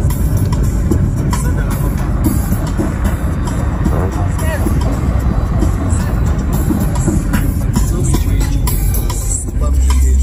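Busy car-meet noise heard from inside a slowly moving car: a steady low rumble of car engines mixed with music and people's voices.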